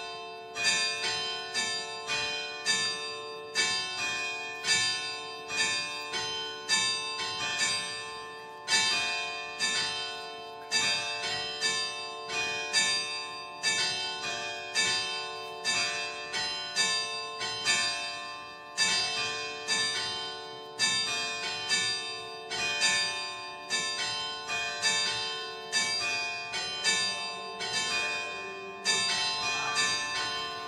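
Church bells ringing in a steady series of strikes, about three every two seconds, each tone ringing on and overlapping the next.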